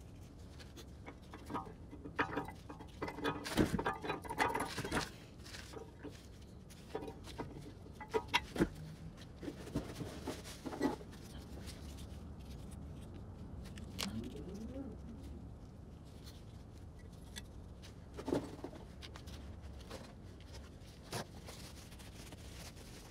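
Brake pads and a metal pad retaining clip being handled and fitted into a Brembo caliper: scattered clicks and clacks of metal parts, busiest in the first half, with a few single knocks later on.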